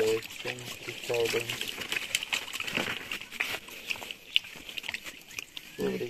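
Shallow water sloshing and splashing in short bursts as a fishing net is pulled and worked by hand. Brief voices are heard in the first second or so, over a steady high buzz in the background.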